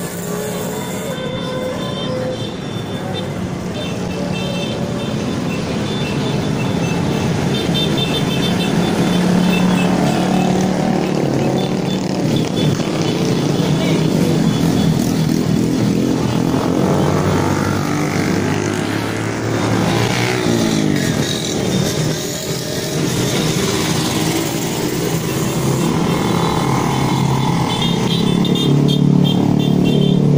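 Many small motorcycles passing close by in a continuous stream, engines running and revving, with pitch glides as bikes go by about two-thirds of the way through.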